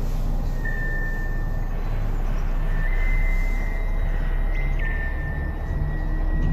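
A steady low rumble with high, drawn-out squealing tones that slide down in pitch and then hold for a second or two, changing pitch several times, typical of train wheels squealing on rails.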